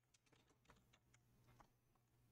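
Very faint computer keyboard typing: a few soft, scattered keystrokes, barely above near silence.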